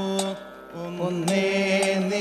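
Kathakali vocal music: a singer holds a long note, drops out briefly about half a second in, then comes back with a wavering note. Sharp metallic strikes, typical of the chengila gong and ilathalam cymbals that keep time in Kathakali, fall about every half second.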